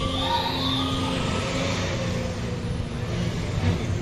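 Laser-show soundtrack played over loudspeakers: several overlapping siren-like tones sweep up and then fall away over a steady low rumble.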